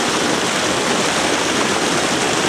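Steady splashing and churning of water as a dense mass of spawning carp thrash at the surface.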